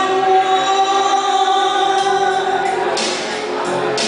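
A woman singing into a microphone through a hall's sound system, holding long notes for the first couple of seconds before the line breaks off.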